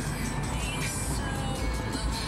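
Music playing in a moving car's cabin, over the car's steady low engine and road rumble.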